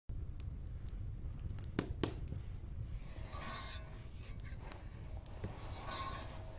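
Wood fire crackling in a hearth: scattered sharp pops over a low steady rumble.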